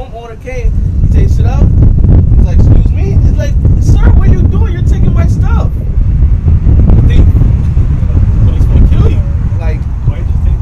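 A loud, low rumble sets in about half a second in and keeps on, with a man's voice talking over it.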